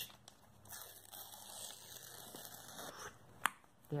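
A strip of paper being torn slowly by hand, a faint rustling tear that lasts about two seconds, followed by one sharp tap near the end.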